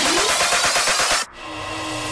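Electronic bass house music in a build-up: the kick and bass drop out, and a rising synth sweep climbs and cuts off abruptly just past a second in. A short, quieter stretch with a held low synth note follows.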